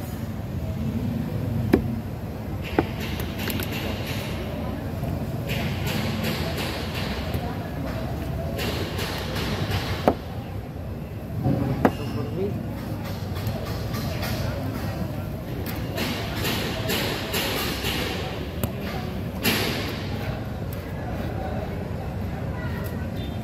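Fish-market bustle with indistinct voices, broken by a few sharp knocks and stretches of hissing scraping: a knife working through a fresh tuna on a cutting board.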